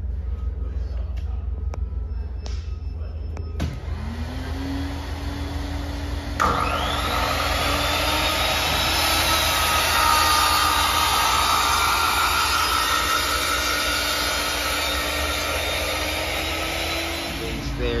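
Vertical panel saw cutting a wood sheet: after a few light clicks, the saw motor starts about four seconds in and its whine rises to speed. From about six seconds in the blade runs through the board with a loud, steady cutting noise that stops just before the end.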